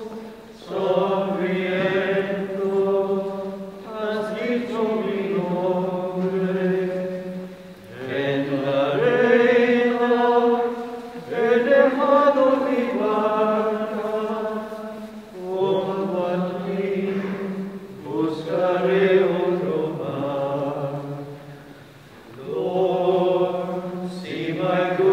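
A Communion hymn sung slowly in long held notes, in phrases of a few seconds with brief breaths between them.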